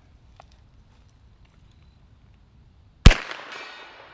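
A single shot from a Sterling Mk.6 semi-automatic 9mm carbine about three seconds in: one sharp crack followed by an echo that fades over about a second.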